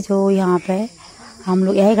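A woman's voice talking in short phrases, with a brief pause about a second in.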